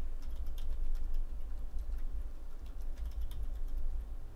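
Computer keyboard typing: a run of light, irregular keystroke clicks as a password is entered, over a low steady hum.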